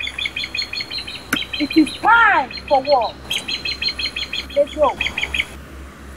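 Birdsong: two bouts of fast, evenly repeated high chirps, with a few lower calls rising and falling in pitch between them.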